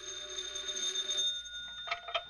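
Telephone bell ringing as a radio-drama sound effect: one ring of about a second and a half with a high, shimmering tone that then dies away. Near the end come two sharp clicks as the receiver is picked up.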